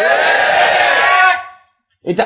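A man's voice holding one long, loud cry through a microphone for about a second and a half, easing down in pitch near the end, then cutting off suddenly.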